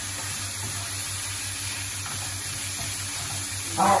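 Pork pieces sizzling steadily in hot oil in a wok, stirred with a wooden spatula.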